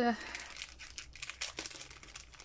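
Clear plastic packaging of a small eraser crinkling as it is handled in both hands, an irregular run of small crackles.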